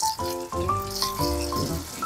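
Background music: a melody of short, stepping notes over a rattling percussion.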